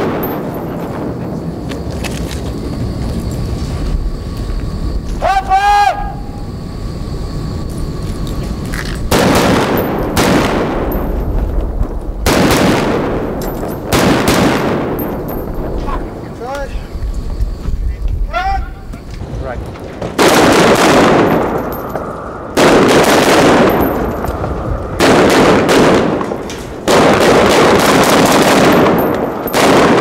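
Automatic gunfire from blank-firing guns in repeated bursts of one to two seconds each, longer and closer together in the second half, with shouting between the bursts.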